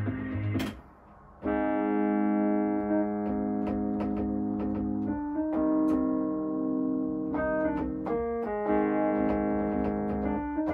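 Electric piano playing sustained chords that change every second or two, with faint ticks over them. A sharp click and a short dip come before the chords enter, about a second and a half in.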